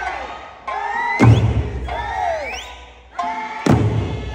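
Eisa drum-dance music: a sung Okinawan folk melody with two heavy big-drum (ōdaiko) strikes, about a second in and near the end, and sliding calls from the performers.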